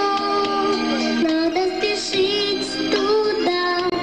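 A girl singing a pop song into a microphone over a synthesizer backing track, with held, stepping melody notes.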